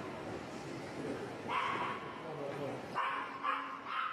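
A dog barking several times in short bursts, with people's voices, over steady background noise.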